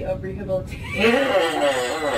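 A person's voice making a wordless sound that wavers up and down in pitch, growing louder about a second in.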